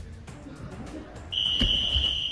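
Steady, high-pitched electronic beep of a gym round timer, starting about one and a half seconds in and held on, with a dull thud just after it begins.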